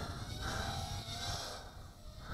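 Faint whir of a Walkera Rodeo 110 mini racing quadcopter in flight at a distance, its brushless motors and tri-blade props rising and falling gently in pitch with throttle. Low wind rumble on the microphone sits under it.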